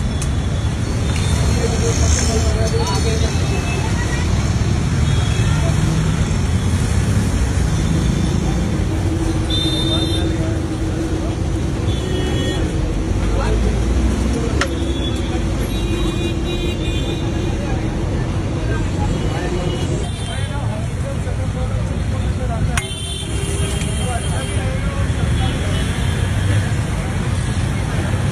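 Busy roadside ambience: steady road traffic noise with the chatter of people's voices around a street food stall.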